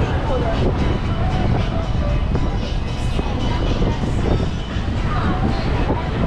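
Busy shopping-street ambience: many people talking, music playing and vehicles passing, over a steady low rumble.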